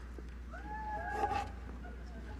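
A faint, brief high-pitched call that glides in pitch, a voice from the audience, about half a second in, over a steady low hum.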